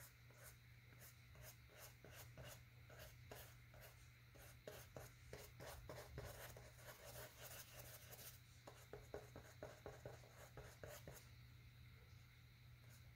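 Faint, quick taps and scratches of an acrylic paintbrush dabbing and flicking paint onto a canvas panel, several strokes a second, busiest in the middle stretch.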